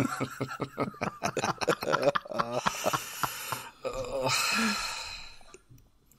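Hearty laughter: a quick run of short laughs, then long wheezing breaths that die away near the end.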